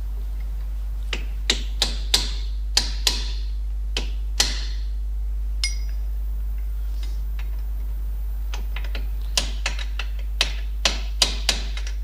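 Club hammer striking a punch to stake the flange of a rear hub nut into the axle shaft: a run of about eight sharp metallic taps, a pause, then about seven more taps near the end.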